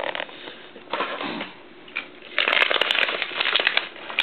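Plastic blister packaging crackling and clicking as an action figure is worked out of its tray, with a dense burst of crinkling from about halfway through until just before the end.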